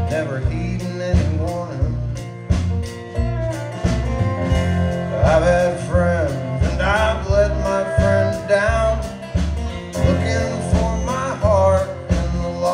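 Live country band playing an instrumental passage between sung lines: fiddle sliding between notes over acoustic guitar, bass and a steady beat.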